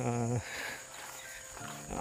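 A man's voice in short phrases, at the start and again near the end, with a pause between. A faint, steady, high-pitched insect drone carries on underneath.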